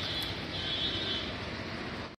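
Steady outdoor background rumble with faint, thin high-pitched tones in the first half.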